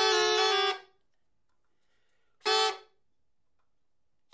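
Diple, the Dalmatian wooden double reed pipe, blown by mouth without its bag in short test notes: a held two-pitch reedy note that stops just under a second in, then one brief blast about two and a half seconds in.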